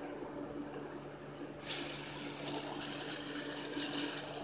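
Tissue paper and a paper gift bag rustling as someone digs into the bag, starting about one and a half seconds in and running on, over a steady low hum.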